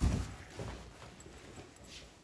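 A low thump at the start, then fabric rustling and soft knocks as a backpack is shouldered and its straps adjusted.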